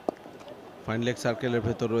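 A single sharp knock of a cricket bat striking the ball right at the start, followed from about a second in by a male commentator speaking.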